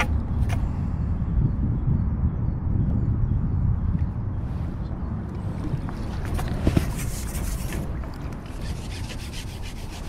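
A low, steady rumble throughout, with a few sharp clicks and a brief rattle about two-thirds of the way through as the fishing pole and its pole pot are handled.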